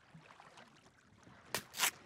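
Two quick scratching strokes near the end, marks being scraped into sand as a cartoon sound effect, over a faint quiet background.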